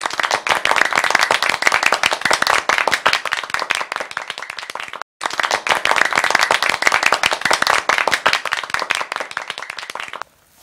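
Applause: dense, steady clapping that cuts out for a split second about halfway through, then starts again.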